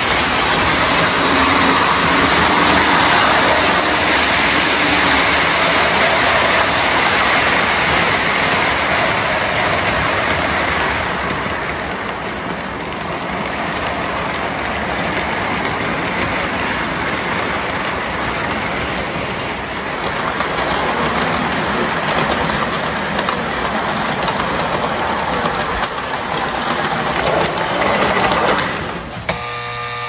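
Lionel New Haven electric toy locomotive, single motor, running on three-rail O-gauge track: a steady rolling rush of wheels and motor, easing off somewhat a third of the way in and dropping away just before the end.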